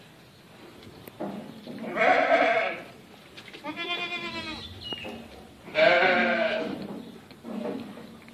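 Boer goats bleating: three long, wavering bleats about two seconds apart, the third the loudest, then a shorter, fainter one near the end.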